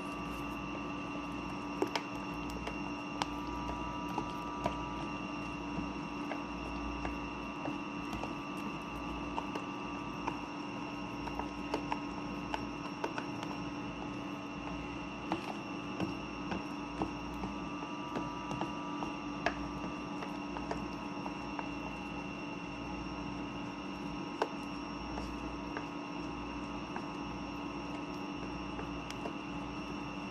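A metal spoon stirring rice-flour and egg batter in a plastic container, giving irregular light clicks and scrapes. Under it runs a steady electrical hum with a fixed whine, like a fan or appliance.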